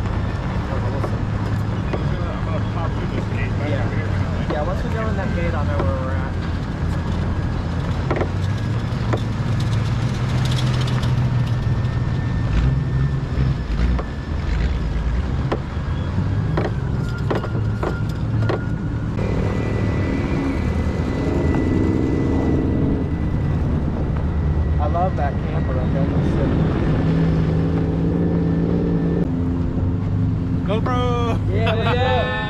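A vehicle's engine running steadily as it drives slowly across a desert dirt lot, with voices in the background. About twenty seconds in, the engine note changes.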